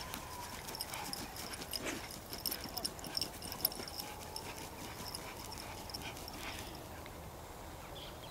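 A husky digging in grassy soil with its front paws: quick, irregular scratching and scraping of dirt and roots, busiest in the first half.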